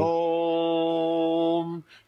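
A voice holding one steady note on a single pitch for nearly two seconds, then cutting off.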